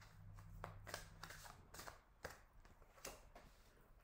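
Faint handling and shuffling of a tarot deck, with a few light card clicks and snaps.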